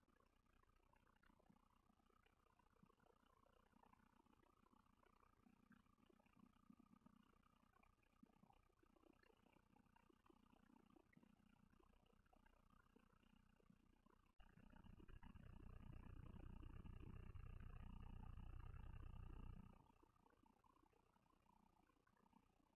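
Near silence: faint venue background, with a low rumble that swells for about five seconds in the second half and then cuts off suddenly.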